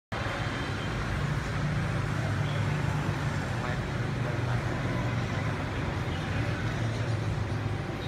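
Steady street traffic noise, a continuous low hum of vehicles running.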